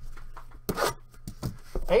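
A shrink-wrapped box of trading cards being handled on a tabletop: a few short knocks and plastic rustles, the loudest a little under a second in.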